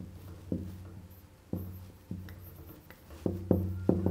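Dry-erase marker writing on a whiteboard: a series of sharp taps and strokes, each followed by a brief low ring from the board. The taps come more quickly near the end, where a faint high marker squeak starts.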